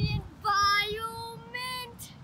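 A young girl singing a few long, held notes unaccompanied, the pitch steady and stepping up slightly toward the end. A brief low thump comes right at the start.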